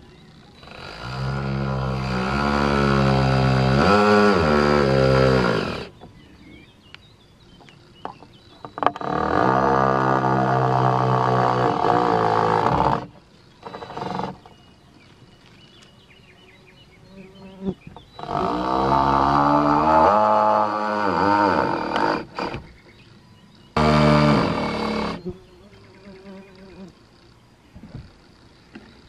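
Cordless drill driving into the wooden decking frame in four runs, the last one short, its motor whine sagging and rising in pitch as the load changes.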